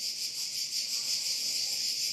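A steady, high-pitched pulsing hiss, like insect chirring, with no speech.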